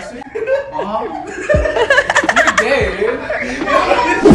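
People laughing and talking, with a quick run of laughter about two seconds in.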